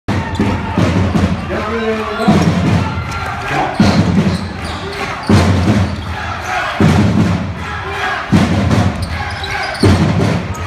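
A basketball bouncing on a hardwood court in a large hall: repeated dribbling thuds that echo around the room, with players moving on the floor.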